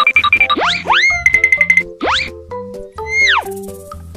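Playful cartoon-style background music: steady plucky notes broken by three quick rising swooping sound effects, with a fast run of repeated high notes a little past a second in.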